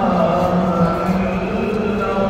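A man's voice chanting in long, steadily held notes.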